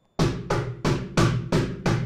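Wooden cajon played with alternating right and left hand strokes, a single-stroke roll: even strikes at about three a second, each with a short ring.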